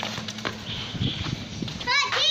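Soccer ball being kicked along tiled paving, with knocks of the kicks and footsteps, then a short high-pitched squeal near the end.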